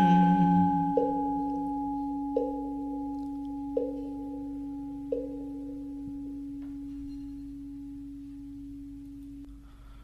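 A struck bell rings out, its long, steady tone slowly fading away. Four lighter strikes follow, about every second and a half, in the first half.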